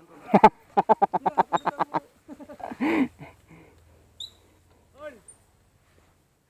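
A person's voice: a quick run of laugh-like pitched pulses about a second in, then scattered short vocal sounds, with a faint low hum underneath later on.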